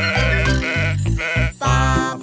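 Cartoon sheep bleating three times in quick succession over the backing music of a children's song.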